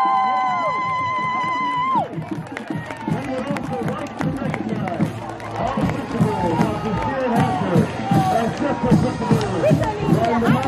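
Crowd at a football game cheering and shouting as the team runs onto the field. Several held musical notes sound together for the first two seconds and cut off, leaving a dense babble of many overlapping voices.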